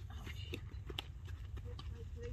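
Faint outdoor ambience of a softball practice: distant players' voices over a low steady rumble, with a couple of light knocks about half a second and a second in.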